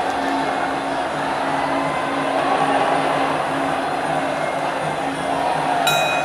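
Traditional Muay Thai ring music (sarama) playing steadily: a wavering reed melody over a repeating drum and percussion pattern. A single sharp, ringing strike sounds just before the end.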